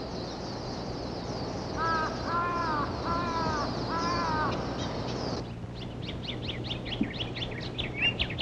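A bird gives four short, harsh, arched calls in quick succession, starting about two seconds in, over continuous high-pitched chirping of forest wildlife. About halfway through, the background cuts to a different run of rapid high chirps.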